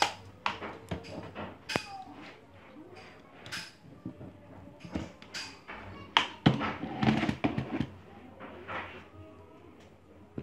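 Scattered clicks and knocks of plastic plug connectors and wiring being handled against a metal motor assembly.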